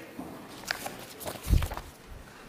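A few light knocks, then a single low thump about one and a half seconds in, over faint room noise.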